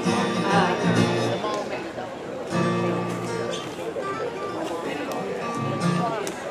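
Acoustic guitars strummed and played with the band's other instruments, a short stretch of string-band music with voices mixed in.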